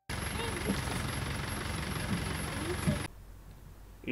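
Safari vehicle running along a rough forest dirt track, heard from inside the cabin: a steady rumble of engine and road noise with a thin high whine and faint voices. It cuts off suddenly about three seconds in, leaving a quiet outdoor hush.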